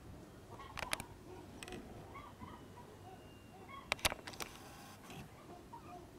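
Free-range chickens clucking softly, short low calls scattered through. Several sharp clicks cut in, about one second in and a cluster about four seconds in, the loudest sounds here.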